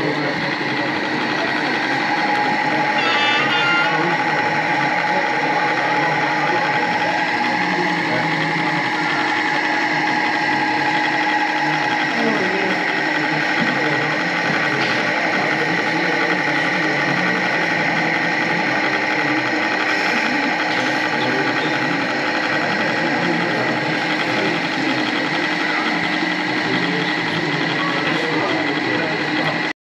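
Steady hall chatter from visitors, with a constant hum and whine from small electric model-train motors running on the layout. A higher whining tone sounds for several seconds near the start.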